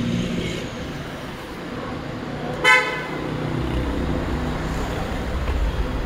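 One short vehicle-horn toot a little under three seconds in, over the low rumble of engines in street traffic that grows louder in the second half.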